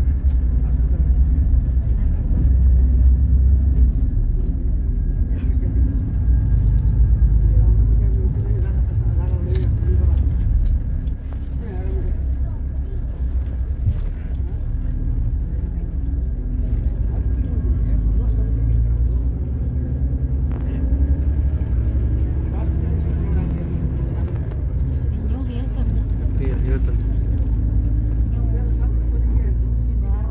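Cabin noise inside a moving city bus: a steady low rumble of engine and road, easing slightly a little after ten seconds, with voices in the background.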